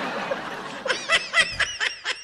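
A person laughing: a breathy exhale, then a quick run of short, high-pitched laughs from about a second in.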